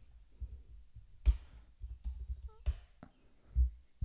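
Sparse clicks at a computer: about three sharp clicks spread over two seconds, with soft low thumps in between.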